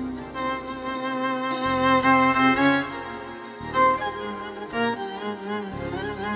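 Live instrumental passage of a Turkish folk song (türkü) from a small ensemble. A bowed-string melody with a wavering tone leads, over plucked notes and a sustained low accompaniment.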